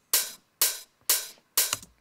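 Soloed rough open hi-hat sample from a house drum loop, hitting four times about half a second apart, each hit a bright hiss that fades quickly. Its very low frequencies are cut, with much of the mids left in so it sounds big and solid.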